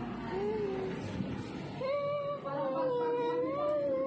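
A kitten meowing: a short cry that rises and falls, then a long, drawn-out wavering cry starting about halfway through.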